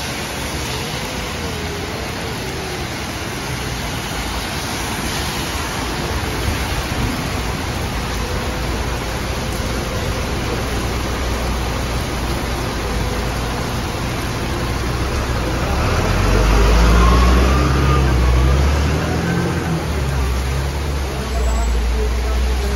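Heavy rain pouring steadily onto the road and pavement, with the tyre hiss of passing traffic. About two-thirds in, a double-decker bus close by adds a deep engine rumble that becomes the loudest sound.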